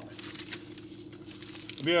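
Paper napkin crinkling softly as it is handled, over a steady low hum.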